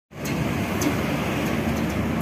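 Road traffic: cars driving along the street, a steady rumble of engines and tyres.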